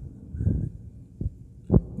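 A few soft, low, muffled thumps and breath noise on a close microphone, about half a second, a second and a quarter, and a second and three quarters in.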